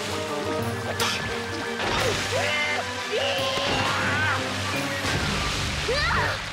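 Cartoon sound effect of water gushing and splashing down, with sharp splash hits near the start and about a second in, over background music. Several short vocal cries come in the middle.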